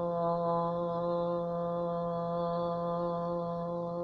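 A woman chanting one long 'Om' in yoga practice, held at a steady low pitch and even volume.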